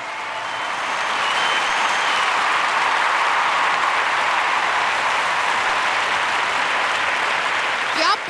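Studio audience applauding: dense clapping that swells over the first couple of seconds, then holds steady.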